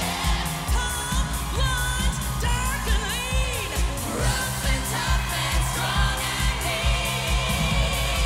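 A group of women singing a pop song live into microphones over a steady beat, the lead voice sliding and bending between notes.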